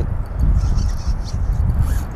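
Wind buffeting the outdoor camera's microphone: a steady, loud low rumble with no clear tones in it.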